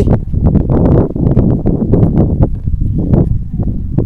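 Wind rumbling on the microphone, with irregular footsteps on a dirt field path.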